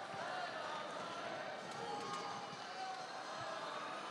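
Faint arena background of crowd murmur and distant voices, steady, with no single loud event.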